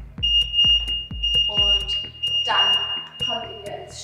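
A long, steady electronic beep from an interval timer, lasting about three and a half seconds, marking the end of the workout's final interval. Background music with a steady beat plays underneath.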